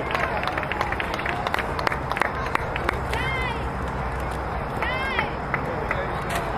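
Voices calling out across a ball field over a steady outdoor background, with two short, high-pitched shouts about three and five seconds in.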